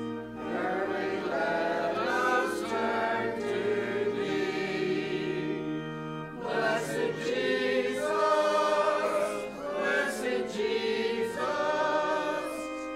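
Mixed church choir singing a slow hymn-like anthem in held phrases, with organ accompaniment, and a short break between phrases about six seconds in.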